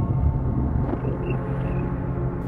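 Steady low rumble of a car driving, heard from inside the cabin, with a fading drone over it.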